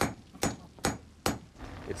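Blacksmith's hammer striking metal: four sharp, ringing blows in an even rhythm, a little under half a second apart.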